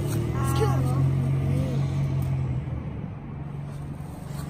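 A motor vehicle passing on the street, its low engine and tyre hum steady at first, then fading away about two and a half seconds in.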